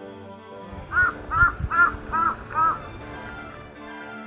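A crow cawing five times in quick succession, starting about a second in, over steady background music.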